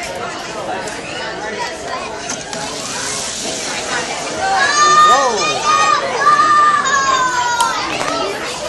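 Children's voices: mixed chatter, then about halfway through several children shriek and cheer in high, long, swooping calls as the cars race.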